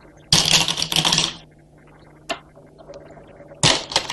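Go stones clicking and clattering against a large demonstration Go board as moves are placed and stones are handled. There is a dense run of clicks lasting about a second, a single click a little past two seconds, and another short run near the end.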